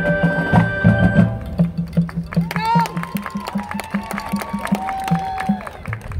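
Marching band and front ensemble playing their field show: a low note pulses about four times a second under held higher tones, with bending, rising tones near the middle.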